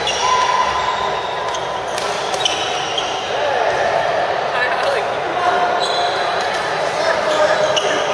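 Busy indoor badminton hall: a steady din of voices and play from many courts, with short squeaks of court shoes on the floor and a few sharp racket hits on shuttlecocks.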